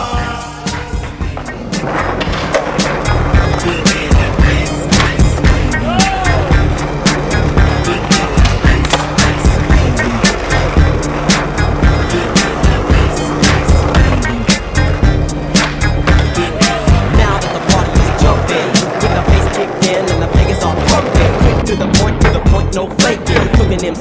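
A hip hop backing track with a steady beat, between verses, mixed with skateboard sounds: wheels rolling on concrete and frequent sharp clacks of the board popping and landing.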